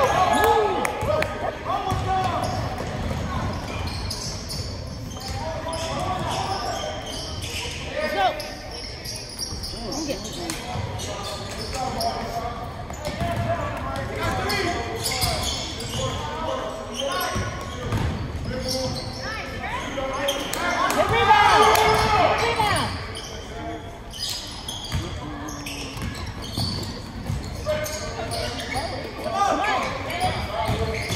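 Basketball game sounds in a gymnasium: a ball bouncing on the hardwood court amid the voices of players and spectators, echoing in the large hall, growing louder for a moment a little past two-thirds of the way through.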